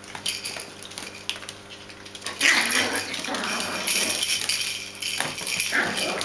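Bichon Frisé puppies play-fighting: light ticks from claws and toys on a wooden floor, then about two seconds in a loud stretch of rough puppy growling and scuffling, with a second burst near the end.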